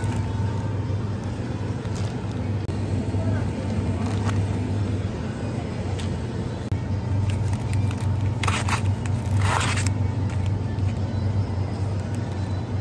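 Supermarket ambience: music and indistinct voices over a steady low hum, with two brief crinkles of plastic packaging a little past the middle as a pack of natto is picked off the shelf.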